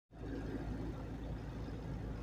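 Steady low rumble of a car heard from inside its cabin, with the engine running.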